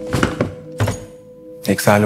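Background music with held notes, with a few thumps in the first half second and another just before the middle; a voice comes in near the end.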